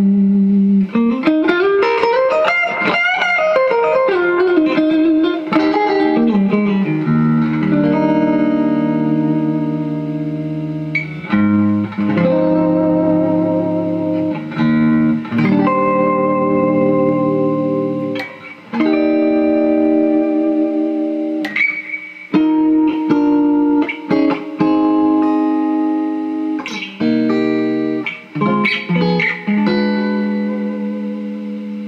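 Electric guitar (custom Warmoth Strat with Klein '59 pickups) played through the 828 Bender Tonebender-style fuzz pedal, a Dr. Z Max 18 amp and tape echo. The first few seconds are a lead line with wide string bends that slide up and down in pitch. From about seven seconds in come held, sustaining fuzz chords with short breaks between them.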